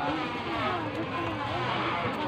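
Busy market ambience: indistinct voices over a steady low hum.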